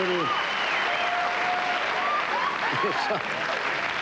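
Studio audience applauding steadily, with a few cheers and shouts heard over the clapping.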